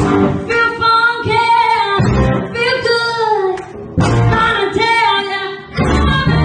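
Live rock band, with a woman singing lead phrases at the microphone over electric guitar and drums. The instruments sit lower under the voice than in the louder passages on either side.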